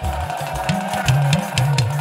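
Live band playing an Afrobeats groove: a bass line stepping between low notes with light percussion, and no singing.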